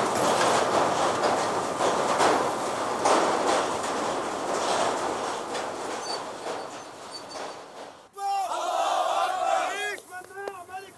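Steady noise of factory machinery, mixed with a crowd murmur, fading slowly over the first eight seconds. It then cuts off suddenly to a crowd at a celebration: repeated high cries that rise and fall, with chanting.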